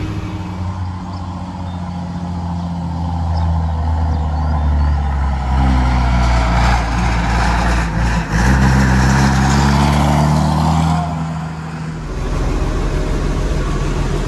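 Massey Ferguson 1200's Perkins A6.354 six-cylinder diesel engine running as the tractor drives along the road. Around the middle it grows louder as the tractor comes along close by, and near the end the sound changes abruptly to a steadier engine note.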